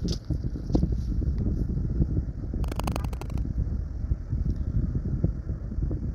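Dice-roll phone app's rattling sound effect: a quick run of clicks lasting under a second about halfway through. It plays over a steady rumble of wind on the microphone.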